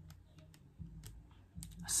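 Faint, scattered small clicks and crinkles of a cellophane-wrapped pack of page markers being handled.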